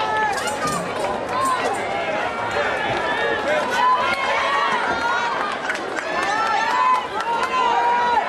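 High school football crowd in the stands: many voices yelling and calling out over one another, with a few sharp claps in the first couple of seconds.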